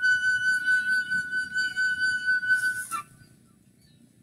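Music: a flute-like instrument holding one long, steady high note that ends about three seconds in.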